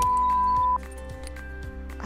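A steady test-tone beep, a single pure high tone of about 1 kHz played with colour bars, lasting under a second and cutting off sharply. Soft background music carries on under it and after it.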